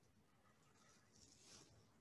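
Near silence: faint room tone, with one soft, brief hiss about a second and a half in.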